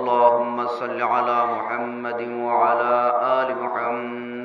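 A man chanting a melodic Islamic religious recitation, drawing out long held notes on a steady pitch.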